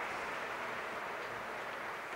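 Steady background noise, an even hiss with no distinct events: the room tone of a pause with no one speaking.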